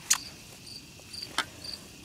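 Crickets chirping steadily, about two short high chirps a second. Two sharp clicks fall about a second and a quarter apart, the first just after the start.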